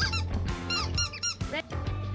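Squeaky dog toy squeezed repeatedly, giving quick runs of short high squeaks that bend up and down in pitch, over background music.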